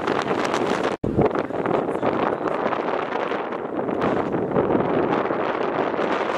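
Wind buffeting the camera microphone: a loud, rough, steady rushing noise, broken by a brief cut about a second in.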